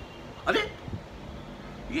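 A man's voice giving one short surprised exclamation, "arey", about half a second in, followed by quiet room tone.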